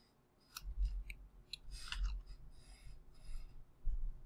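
Computer keyboard keystrokes: a handful of separate, irregularly spaced key clicks as a spreadsheet formula is typed character by character.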